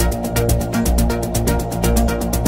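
Melodic techno: a steady kick drum about twice a second under fast hi-hats and a synth melody.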